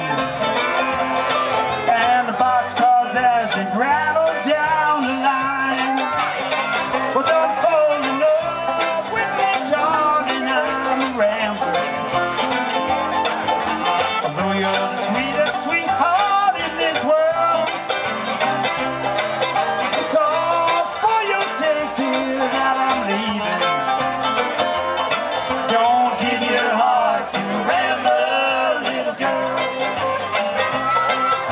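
Live bluegrass band playing an instrumental break, with banjo and acoustic guitar carrying a steady, continuous tune.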